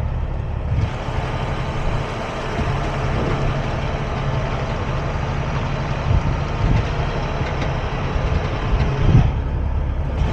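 Semi truck's diesel engine running at low speed while reversing a trailer. From about a second in until near the end, the sound is picked up out of the open cab window, with outdoor noise and hiss over the engine.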